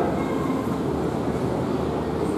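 Steady low rumbling background noise with no speech, even and unchanging.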